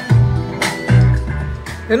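Recorded music track playing back from a computer media player, with deep bass notes on a steady beat.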